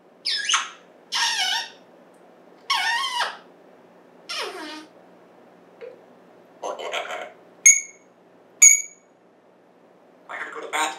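African grey parrot giving a string of short whistled calls with gliding pitch, roughly one a second, then two short high whistles near the end.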